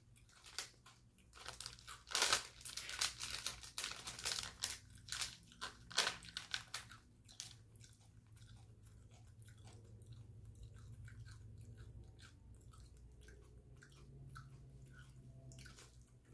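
Crunching and chewing of crisp chips, with dense crackling bites for the first seven seconds or so. The crunching then stops, leaving a faint low hum.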